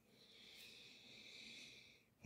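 Near silence: room tone with a faint soft hiss.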